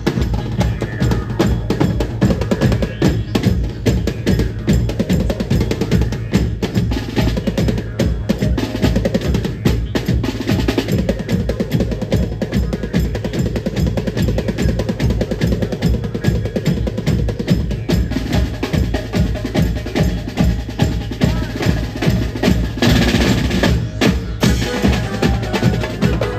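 Mumbai banjo-party band drumming a fast, driving beat: big bass drums, a set of tom-toms, snare and crashing cymbals struck in rapid strokes with rolls.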